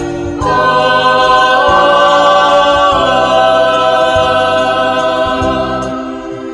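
A choir of young men and women singing long, held chords. The sound swells to a new chord about half a second in, changes pitch a couple of times, then eases off near the end.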